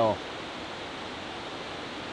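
River water flowing: a steady, even rushing.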